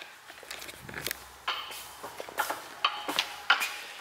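Scattered light clicks and knocks as a removed suspension assembly is handled on a concrete shop floor, with faint voices in the background.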